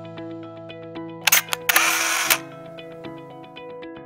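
Intro music with a steady run of plucked notes, cut across about a second in by a camera shutter sound effect: a couple of sharp clicks, then a louder burst of shutter noise lasting about half a second.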